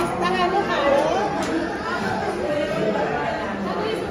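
Several people talking at once around a dining table: overlapping conversation and chatter.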